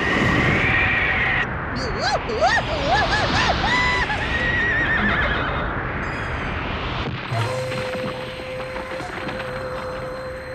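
Cartoon wind-storm sound effect: a loud rushing gust of a blown cyclone, with a horse whinnying over it in the middle. Near the end the wind fades and a single sustained eerie music note takes over.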